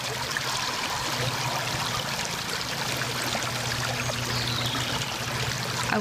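A shallow creek running steadily over rounded stones and pebbles.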